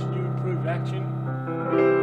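Yamaha Clavinova CLP-775 digital piano playing sustained low bass chords. A new chord comes in about a second and a half in, with higher notes added near the end.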